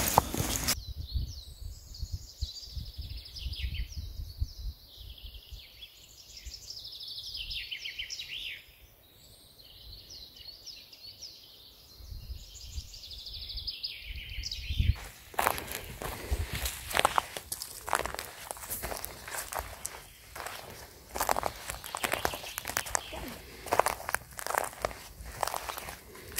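Songbirds chirping and warbling in short phrases for the first half. About fifteen seconds in, footsteps crunching on the forest floor take over.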